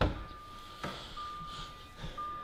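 A car door unlatching and opening with a short knock, then the Jaguar X-Type's warning chime sounding a steady high beep that breaks off briefly and starts again. It is the lights-on warning, sounding because the lights are on with the driver's door open.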